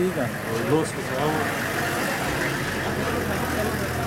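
A 4x4 vehicle's engine idling steadily, with men's voices over it in the first second or so.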